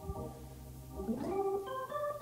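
Hammond organ playing soft sustained chords, the notes shifting about a second in with a short upward slide.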